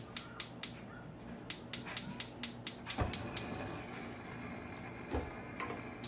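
Gas range spark igniter clicking rapidly, about five clicks a second, as a burner is lit. There is a short run of clicks at the start, then a longer run from about a second and a half in to about three and a half seconds, with a low thump about three seconds in.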